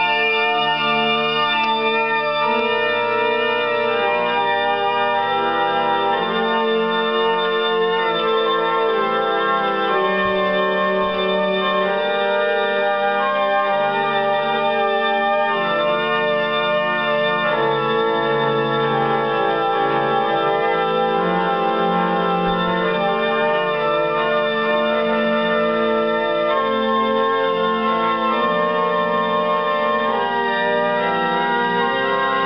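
Baroque French pipe organ music played back from a c. 1930 78 rpm record on an EMG acoustic horn gramophone: full sustained chords moving slowly, with a dulled, treble-limited tone.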